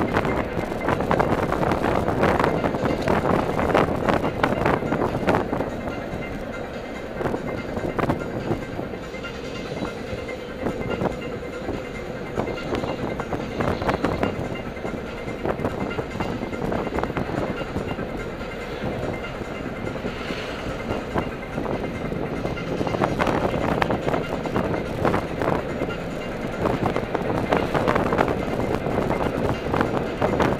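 Steady road and engine noise inside a moving car's cabin, with rattles and bumps, harsh through a poor camera microphone.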